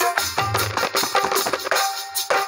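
Electronic keyboard playing a dholak-style drum rhythm, deep thumps and sharper strikes, with a few held melody notes over it.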